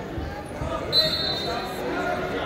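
Voices talking in a large gym, cut by one short, high whistle blast about a second in.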